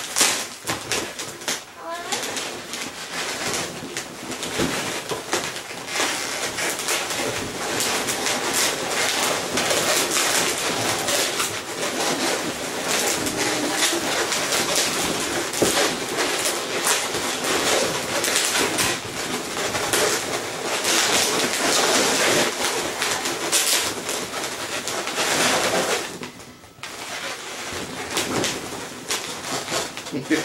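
Latex modelling balloons squeaking and rubbing against each other as they are twisted and bent into a large balloon sculpture. The squeaks and crackles run almost without a break, with a short lull near the end.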